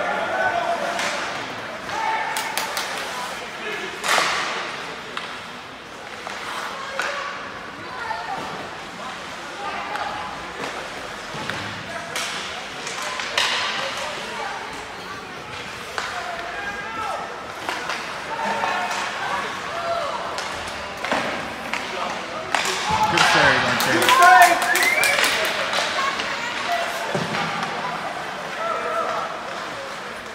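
Ice hockey in an indoor rink: spectators chatter and call out while sticks, puck and skates clack against the ice and boards in scattered sharp knocks. A little past two-thirds through comes a louder burst of shouting with a cluster of knocks.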